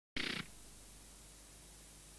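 A single short, loud burst of distorted heavy-metal band sound just after the start, then a low steady hiss.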